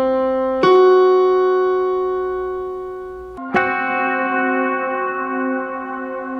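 Yamaha keyboard sounding the augmented fourth (tritone): middle C, then F sharp added above it, both ringing and fading. About three and a half seconds in, the two notes are struck together again and ring on.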